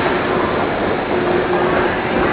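Busy indoor concourse ambience: a dense, steady hubbub of many people walking and talking, with a faint steady hum underneath.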